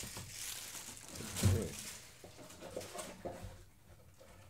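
Handling noise of a nylon webbing gun belt being lifted and turned in the hands: soft rustling with a dull knock about one and a half seconds in, then fainter small taps.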